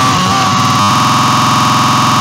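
Loud, heavily distorted cartoon crying sound effect. It starts as a wavering wail and, just under a second in, becomes a harsher, steady buzzing.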